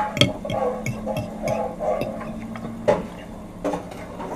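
Scattered clicks and knocks of a white ceramic plate being handled and tipped up close to the microphone, the loudest knock near the end, over a faint steady hum that stops about three seconds in.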